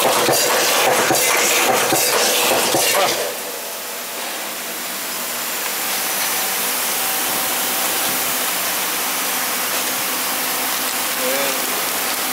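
Snack-bag vertical form-fill-seal packaging machine running. A dense clattering of rapid clicks lasts for about the first three seconds, then drops to a quieter, steady hiss with a faint hum.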